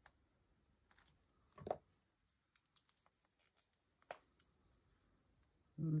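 Faint clicks and light taps of art tools handled on a desk, with one louder knock a little under two seconds in: a Stabilo All pencil being set down and a water brush picked up.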